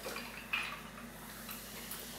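Quiet sipping of sparkling water from glasses, with a brief louder sound about half a second in.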